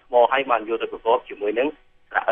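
Speech only: a person talking in Khmer, with a short pause near the end.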